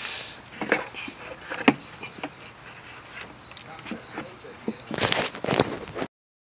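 Camaro's stock plastic air intake tube being twisted and worked loose from the throttle body by hand: scattered clicks and rustles of plastic and rubber, with a denser burst of scraping and rattling about five seconds in.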